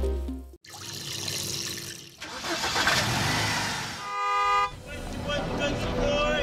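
Intro sound effects: music cuts off, a swell of rushing noise builds, then a short horn blast of about half a second sounds about four seconds in, before music with a voice picks up near the end.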